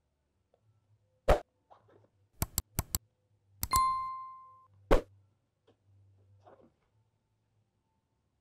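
Subscribe-button animation sound effect: a click, then a quick run of four clicks, then a short bell ding that rings for almost a second, then one more click.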